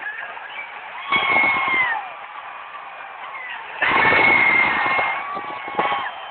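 Football stadium crowd cheering, with two long, loud yells from fans close by: the first about a second in, the second and longer one around four seconds in.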